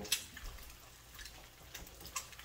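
An egg frying in olive oil in a pan on a gas burner: a faint, steady sizzle with small crackles. A single sharp click comes just after the start.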